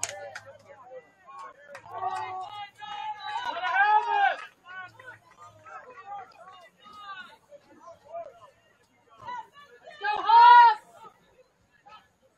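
Scattered shouts and calls from players and people around a soccer pitch during play, with a louder, drawn-out shout about ten seconds in.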